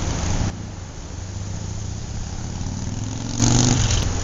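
Steady low engine hum of motor-vehicle traffic. It drops in level about half a second in, then gets suddenly louder near the end.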